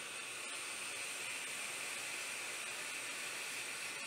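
Steady hiss of a long vape draw: air pulled through the atomizers while the coils fire, two vapers drawing at once.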